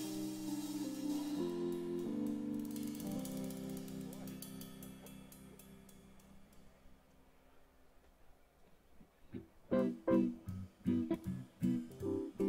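Live band music: held chords that slowly fade almost to silence, then a new run of short, sharp chords starting about ten seconds in.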